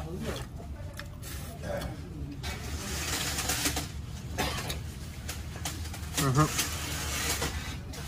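Faint voices in the background over steady low room noise, with brief stretches of hiss.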